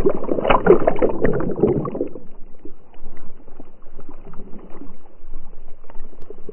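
Lake water splashing and sloshing against a GoPro worn on a swimming dog's back, heavy for the first two seconds and then settling into lighter, steady sloshing.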